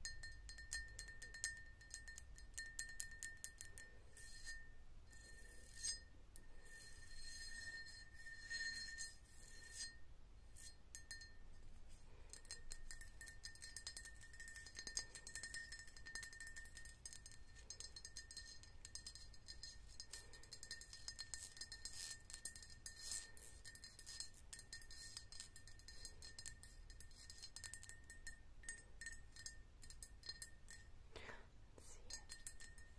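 Long acrylic fake nails tapping and scratching rapidly over the ridges of a ribbed vase: a dense run of light clicks with a faint ringing note from the vase beneath them.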